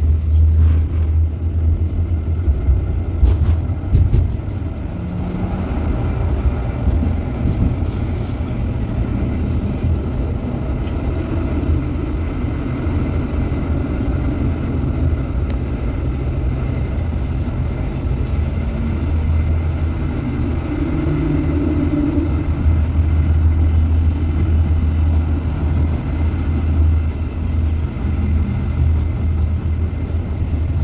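Tram running along its rails, a steady low rumble heard from inside the car, with a few light clicks in the first several seconds.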